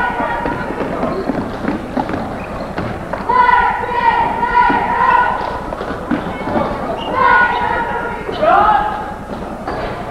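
Live basketball play on a gym's hardwood floor: the ball bouncing and feet thudding as players run, with voices calling out, longest about three to five seconds in and again near the end.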